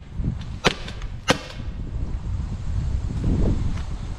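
Byrna SD CO2-powered launcher firing two sharp shots about two-thirds of a second apart, the balls striking a tree trunk and chipping off bark.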